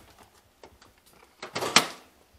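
A van door swung shut, a short rush of noise ending in a sharp latch click near the end, after faint handling clicks.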